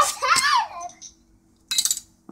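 A child's short exclamation, then near the end a quick clatter of sharp clicks from metal bottle caps striking a magnetic bottle-cap catcher and the bench.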